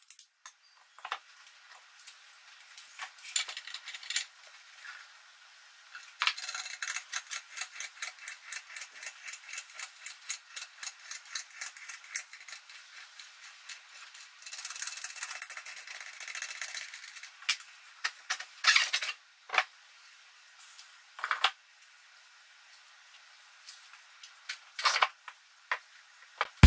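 Light metallic clicking and rattling of hardware on a wooden jig: a threaded steel rod being turned and fitted by hand. A run of quick, regular clicks, about three or four a second, fills the middle, and a few sharper knocks come near the end.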